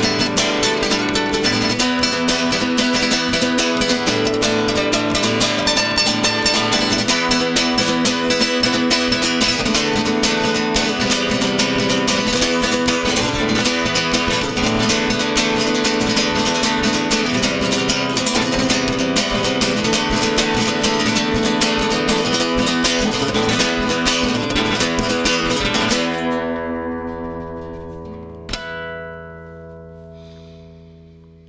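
Nylon-string classical guitar played solo in a fast, busy strummed rhythm that stops abruptly about four seconds from the end on a chord left to ring. One more chord is struck about two seconds later and fades away.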